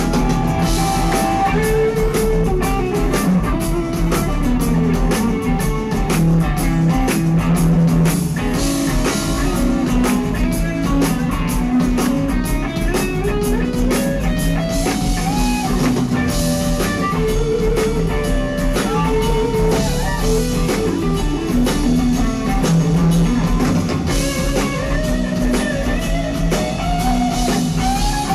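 Live rock band in an instrumental passage: a lead electric guitar plays a melodic solo with sliding and bent notes over a steady drum kit and the rest of the band.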